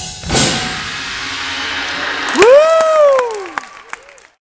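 A small audience applauding, then one person's long whoop about two and a half seconds in that rises and falls in pitch, while the last few claps die away.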